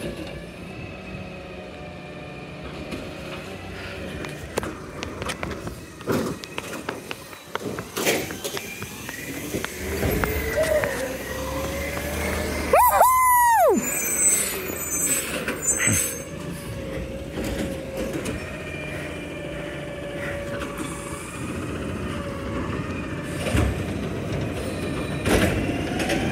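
New Way Sidewinder automated side-loader garbage truck, natural-gas powered, running with wavering engine and hydraulic whines, sharp air-brake hisses and clunks. It grows louder about ten seconds in as it comes close.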